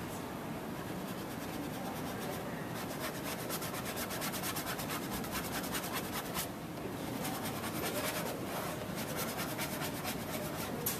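Paintbrush scrubbing oil paint onto the painting surface in quick, short strokes: a dry, scratchy rubbing that thickens about three seconds in and briefly lets up about two-thirds of the way through.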